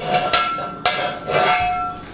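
Two metallic strikes a little under a second apart, each followed by a clear, steady ring.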